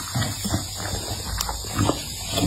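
A pit bull-type dog eating, chewing and smacking its mouth in an irregular run of short noises, the loudest near the end as it takes food held out to it.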